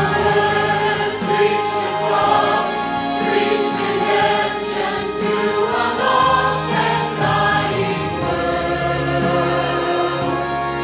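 Mixed church choir of men and women singing in sustained, held chords.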